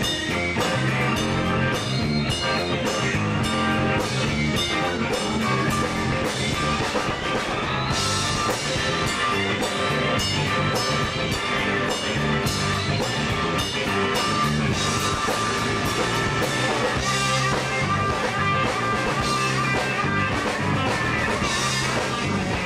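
Live rock band playing with no singing: electric guitar over a drum kit and bass guitar.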